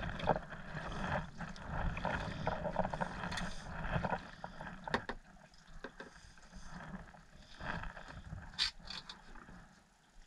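A double-bladed kayak paddle dipping and pulling through calm water, with water rippling along the kayak's hull. It is louder for the first few seconds and quieter after, with a few sharp clicks.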